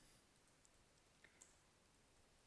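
Near silence, with a few faint clicks of computer keyboard keys being typed.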